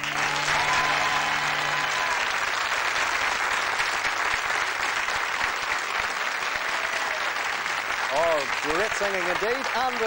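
Audience applause that starts suddenly as a song ends and goes on steadily, with the song's last held note fading out in the first two seconds. A man's voice starts speaking over the clapping near the end.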